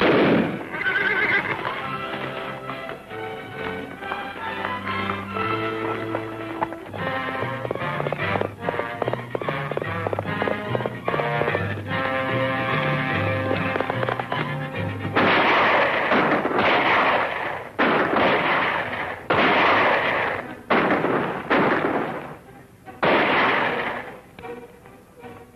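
Dramatic orchestral film score with a moving bass line. From about fifteen seconds in it gives way to a run of about seven loud gunshots, each ringing on for close to a second.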